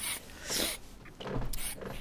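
Aerosol can of Halfords red brake caliper paint spraying in several short hissing bursts, putting a light first coat on a brake caliper.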